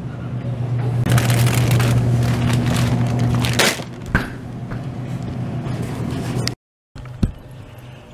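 Supermarket aisle sound with a steady low hum, overlaid for the first few seconds by loud rustling and scraping from a handheld phone being moved about. The sound drops out abruptly for a moment near the end, followed by a few faint clicks.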